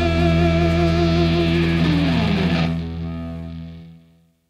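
A rock song's final chord on electric guitars and bass, held and ringing out. About halfway through, one note slides down in pitch, then the chord fades away near the end.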